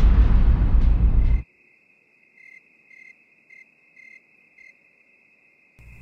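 A loud rushing rumble cuts off abruptly, leaving a thin, steady, cricket-like trill. Five short chirps follow, about half a second apart.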